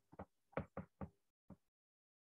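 Stylus tip tapping on a tablet's glass screen while handwriting a word: about five faint, short taps in the first second and a half.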